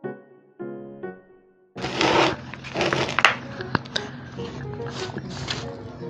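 Piano background music, cutting off about two seconds in. It gives way to rustling and crackling from hands pressing potting soil into a plastic pot around the plant, with a few sharp clicks.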